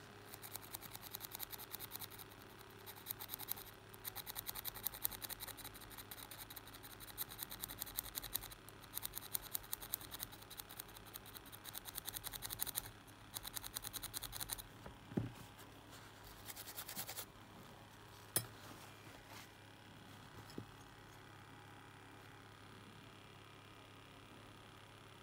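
Fast, fine scraping of a sharp metal tool tip on a tiny switch's contacts, scratching off corrosion, in long runs through most of the first fifteen seconds. A short burst of scraping follows, along with a few separate sharp clicks.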